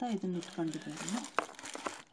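Something being handled and crinkling, with a few sharp crackles in the second half. A woman's voice is heard over it in the first second.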